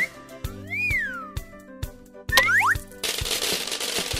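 Children's cartoon music with a steady beat, overlaid with cartoon sound effects: a swooping, boing-like glide up and down in pitch about a second in, a couple of quick rising zips around two and a half seconds, then a dense crackling hiss through the last second as the egg breaks apart.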